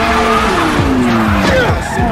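Car engine note falling as the revs drop, over a steady rush of tyre skid noise.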